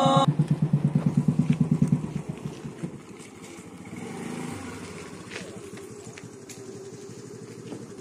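Royal Enfield single-cylinder motorcycle engine pulling up with its even beat, about ten pulses a second. After about two seconds it drops to a quieter, rougher low running sound.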